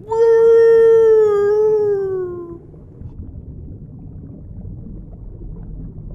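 A cartoon sea turtle's voice giving one long, drawn-out howl-like call, held steady and sagging in pitch near the end, followed by a low, even underwater-style rumble.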